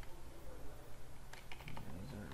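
Computer keyboard keys being pressed, mostly in a quick run of clicks past the middle, as text is deleted from a command line.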